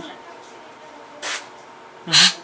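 A dental air-water syringe gives a short puff of air, about a second in, onto the mouth mirror to clear it.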